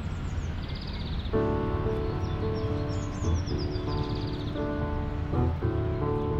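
Grand piano playing slow, held chords that come in about a second in and change every couple of seconds, over a steady low outdoor rumble with birds chirping high above.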